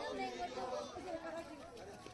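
Indistinct chatter of a crowd, several people talking at once.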